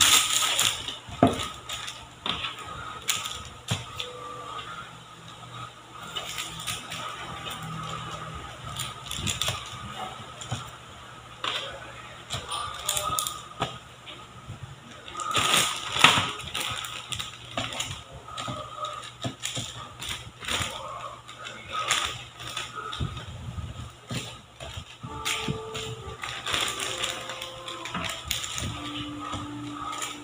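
Parchment paper rustling and crinkling as hands smooth it over a baking tray, then irregular soft taps and rustles as balls of cookie dough are set down on the paper, with louder crackles near the start and about halfway through.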